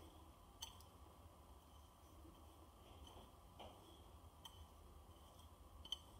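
Near silence with a few faint ticks from fingers mixing dry sugar and cinnamon in a ceramic bowl.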